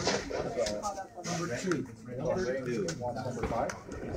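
People talking, with one sharp gunshot crack at the very start and a few faint clicks or knocks behind the voices.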